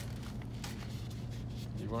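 Paper and plastic rustling and scraping faintly as a paperback book is handled against sheets of book-cover material, over a steady low room hum.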